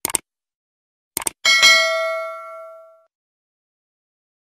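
Subscribe-button sound effect: quick mouse clicks at the start and again just after a second in, then a notification bell ding that rings on and fades away by about three seconds in.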